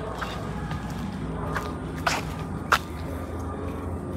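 Footsteps through dry grass and brush, with a few light crunches and one sharper snap a little under three seconds in, over a steady low outdoor background.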